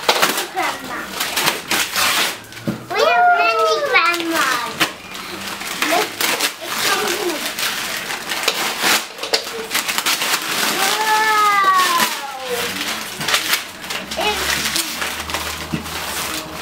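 Brown paper and plastic wrapping crinkling, rustling and tearing as a cardboard parcel is unwrapped by hand. A child's voice calls out twice, drawn out and sliding in pitch, about three seconds in and again about eleven seconds in.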